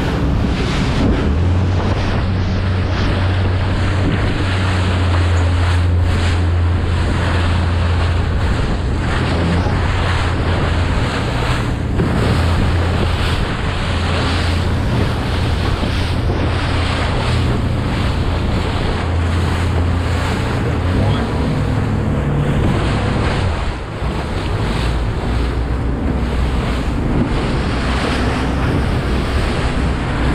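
A Blue Wave 2800 Makaira center-console running fast through rough seas: wind buffeting the microphone over rushing water and hull spray, with the steady low drone of its twin 300 hp outboards underneath.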